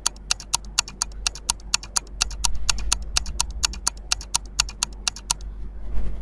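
Quiz countdown-timer sound effect: a fast, even ticking, about five ticks a second, that stops shortly before the time runs out.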